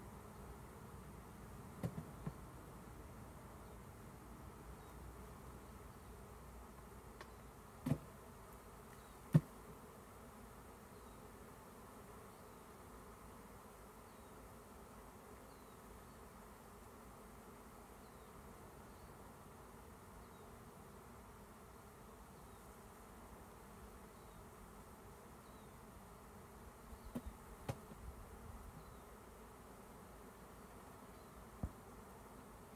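A honeybee swarm buzzing as a faint, steady hum, with a few sharp clicks about 2, 8 and 9 seconds in and again near the end.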